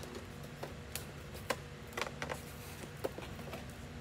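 Tin snips cutting through a hard plastic clamshell package: irregular sharp clicks and snaps of the blades and plastic, over a faint steady low hum.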